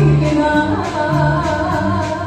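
A woman singing a sevdah song in a wavering, ornamented line, with a live band of accordions, electric bass and drums behind her; bass notes change every half second or so.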